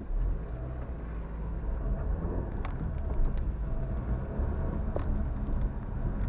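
A car's engine and road noise heard from inside the cabin as it pulls away from a stop and turns, a low rumble that comes in suddenly and slowly grows louder, with a few faint light clicks.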